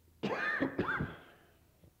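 An elderly man coughing, two harsh coughs in quick succession about a quarter second in, heard on an old tape recording.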